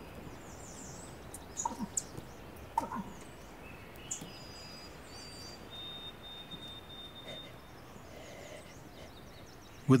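Forest background with scattered bird chirps and whistles, one held whistle about six seconds in, and a few brief low sounds about two and three seconds in.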